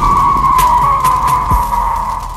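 Logo intro sound effect: a long, loud screech that slowly falls in pitch, with a few sharp hits over it, starting to fade near the end.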